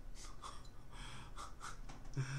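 A man laughing under his breath: a quick string of breathy, unvoiced puffs and snorts of air with little voice in them.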